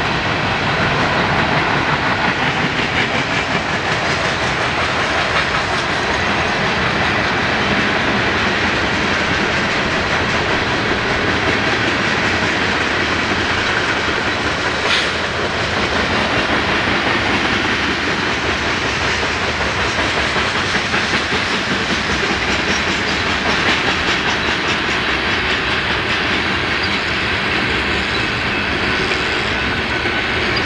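Freight train of tank cars and covered hoppers rolling past, the steel wheels running on the rails in a steady, continuous noise, with one sharp click about halfway through.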